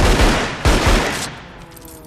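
Rapid volley of handgun shots in a film shootout, stopping a little over a second in and leaving faint lingering tones.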